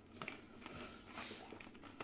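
Faint chewing of a cracker, a few soft crunches and clicks.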